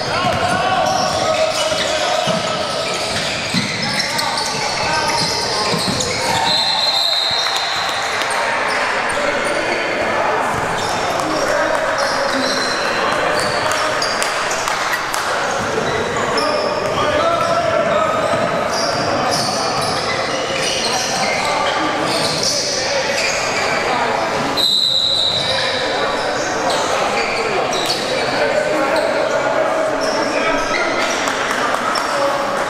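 Basketball game on a hardwood gym court: a ball dribbling and players' indistinct shouts and chatter, echoing in a large hall. Two short high-pitched squeaks stand out over the steady din.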